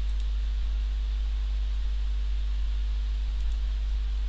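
Steady low electrical hum with a few fainter higher hum tones and a faint even hiss. Nothing else stands out.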